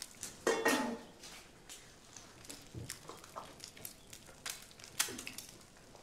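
Dishes and cutlery clinking and knocking irregularly on a kitchen counter as food is plated, with sharper clinks about half a second and five seconds in.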